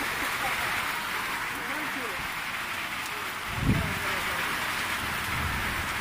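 Steady hiss of falling rain. A little past halfway comes a brief, louder low thump, followed near the end by a low rumble.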